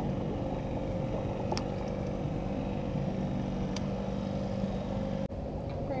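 A motorboat engine's steady hum, holding one pitch, with two light clicks partway through. It breaks off abruptly near the end.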